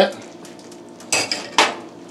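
Metal slotted spatula set down on a ceramic spoon rest on the stovetop: two sharp clinks about half a second apart, a second in.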